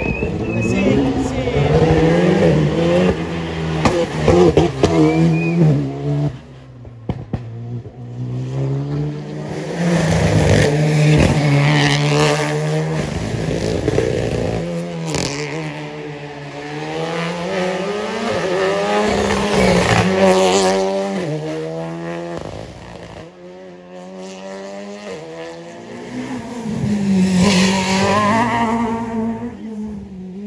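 Rally cars' engines revving hard through a hairpin one after another, the pitch climbing and dropping with each gear change as they brake, turn and accelerate away. The engine sound dips about six seconds in and again past the twenty-second mark, then swells as the next car arrives near the end.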